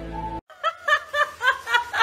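Background music that stops abruptly, followed by a person laughing in a rapid, even run of short snickering pulses, about four a second.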